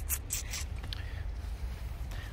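A few short rustles in the first half-second, like leaves brushing or rubbing against the phone, over a low steady rumble.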